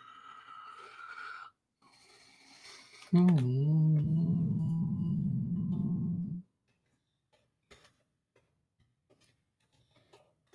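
A man lets out one long, drawn-out groan lasting about three seconds, starting about three seconds in, in frustration at a problem that won't go away. Softer breathy sounds come before it, and a few faint keyboard clicks come after.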